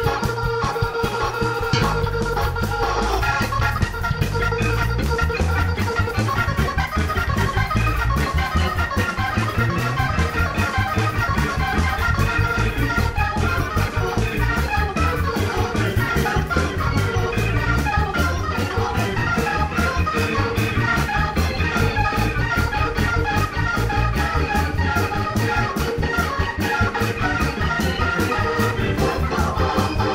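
Hammond organ being played: held chords for the first couple of seconds, then a fast, busy run of notes over a moving bass line, breaking off near the end.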